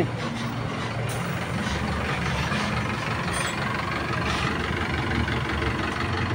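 Diesel engine of a Mercedes-Benz minibus, running steadily as the bus pulls up and stops close by.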